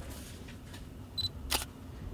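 Olympus mirrorless camera giving one short high beep as autofocus locks with the M.Zuiko Digital 17mm f/1.8 lens, then its shutter clicking once about a third of a second later.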